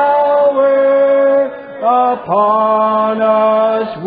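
Men and women singing a slow hymn together, holding long notes with short slides between them: one long note, a brief dip, a short note, then another long held note.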